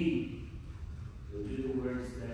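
Only speech: a man's voice, a phrase ending at the very start and the next one beginning about a second and a half in.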